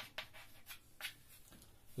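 Chalk writing on a blackboard: a few faint, short scratches and taps as a word is written and underlined.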